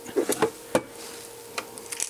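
A single sharp knock about three-quarters of a second in, with a few faint ticks after it: the plastic-cased soldering station being set down on a wooden workbench. A brief mutter of voice comes just before the knock.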